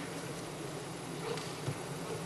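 Steady low buzzing hum of a large hall's room tone through the microphones, with a few faint knocks.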